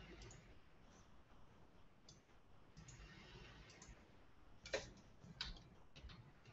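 Near silence with a few faint computer mouse clicks, two of them a little louder near the end.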